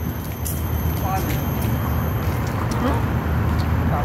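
Steady low outdoor rumble on the phone's microphone, with faint brief voice murmurs now and then.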